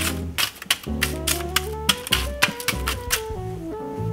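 Metal spoon cracking brittle dalgona honeycomb toffee: a quick run of sharp crackles and crunches that stops near the end. Background music with a bass line plays throughout.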